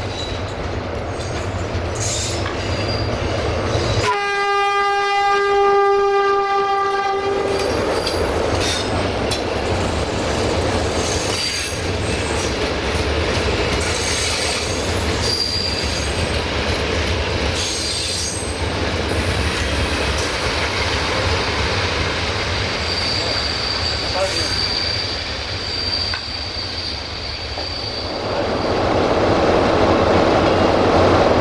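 A 060-DA (LDE2100) diesel locomotive's single-tone horn gives one long blast of about three and a half seconds, about four seconds in. After it comes the steady rolling of passenger coaches passing close, with wheels clicking over rail joints and a thin high wheel squeal now and then. Near the end a diesel engine draws close and grows louder.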